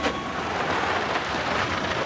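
Land Rover Defender driving up and pulling to a stop, with a steady engine and road noise.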